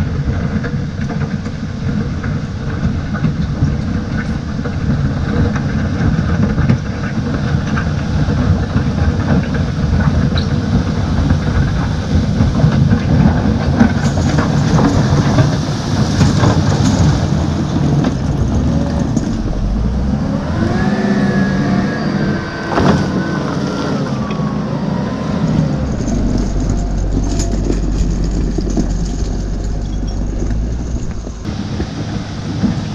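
Fiat-Hitachi W190 wheel loader's diesel engine working under load while its bucket pushes stones and debris along a gravel road, with rocks grinding and crunching under the bucket and chained tyres. About two-thirds of the way in, a whining tone rises and falls, and the engine's rumble grows stronger near the end.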